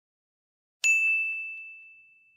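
A single notification-bell sound effect: one clear, high ding struck about a second in, ringing out and fading away over the next second or so.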